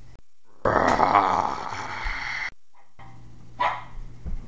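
A dog growling loudly for about two seconds, starting and stopping abruptly with a moment of dead silence before and after it.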